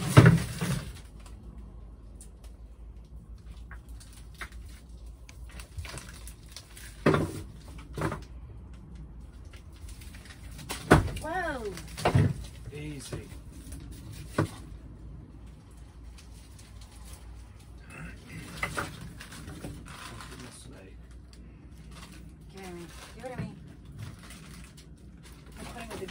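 Frozen packages of meat knocking and thudding as they are packed back into a small chest deep freezer: a handful of separate knocks spread through the stretch.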